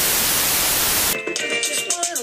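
Video-edit static effect: a burst of TV-style white-noise hiss that cuts off about a second in, when music with a beat of sharp high clicks starts.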